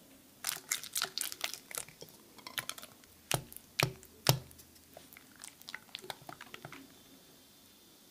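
Batter being mixed in a glass bowl: a silicone spatula stirring flour into matcha paste, then a silicone whisk beating in egg yolks, making quick scraping and clicking sounds against the bowl. Three sharper knocks come near the middle.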